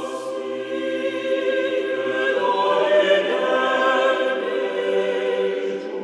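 A choir singing slow, sustained chords as opening music.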